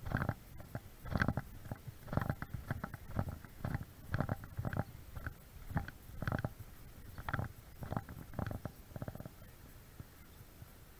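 Footsteps on a concrete path picked up by the camera carried by the walker: dull low thumps about two a second, stopping shortly before the end.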